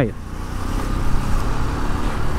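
Yamaha street motorcycle's engine running at low speed in city traffic: a steady low rumble under a light rush of wind.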